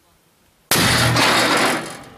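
Large towed cannon firing one shot: a sudden, very loud blast about two-thirds of a second in that holds for about a second before dying away.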